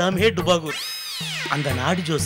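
A single cat's meow, one call that rises and then falls in pitch, lasting under a second, between spoken lines over background music.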